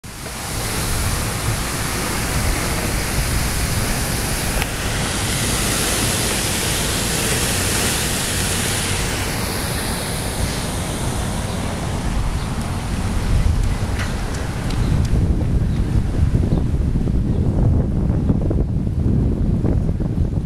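Wind buffeting the microphone of a camera carried on a moving bicycle. It begins as a steady hiss, then turns into a heavier low rumble about fifteen seconds in.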